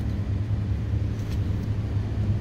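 A steady low hum inside a van's cabin, typical of the parked van's engine idling.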